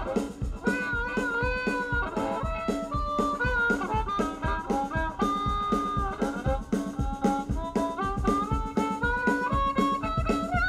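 Live band music led by a harmonica solo: bent, sliding reed notes over a steady drum beat and electric guitar.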